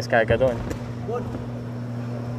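A man's commentary voice briefly at the start, then a steady low hum with a faint voice in the background.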